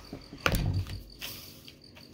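A thump as the open Bible is handled on the table about half a second in, followed by a brief soft paper rustle, over a faint steady high-pitched pulsing tone.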